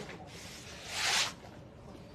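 A single short rasping slide, about half a second long, just after a second in, as a cardboard gift box is handled.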